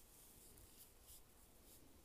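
Faint scratching of a pencil tip moving over paper in short, quick shading strokes.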